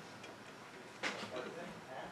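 Quiet room tone with one short click about a second in.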